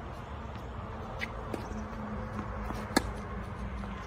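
A tennis ball struck hard by a racket once, about three seconds in, a short sharp crack, with a couple of fainter taps earlier, over a steady low outdoor background.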